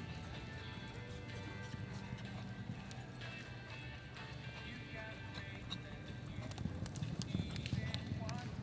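A galloping horse's hoofbeats on arena dirt over background music, the hoofbeats growing louder and denser over the last couple of seconds.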